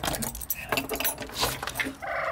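A quick irregular run of clicks and rattles as a door is opened and pushed through.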